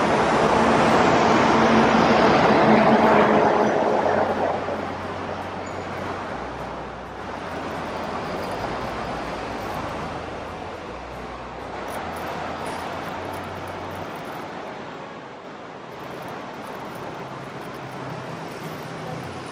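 Street traffic noise: a loud rush of passing traffic that fades over the first four or five seconds, then a steady, quieter traffic hum with a low rumble.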